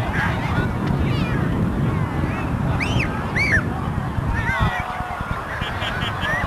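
Short, high, bird-like calls, with two louder arching calls about three seconds in, over a steady low rumble.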